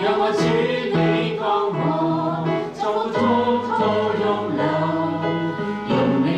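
Worship song played on an electronic keyboard with singing over it, the chords changing every second or so.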